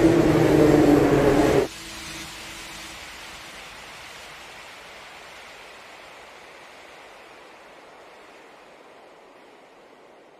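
Background music cut off abruptly just under two seconds in, then a soft, even noise wash that slowly fades out.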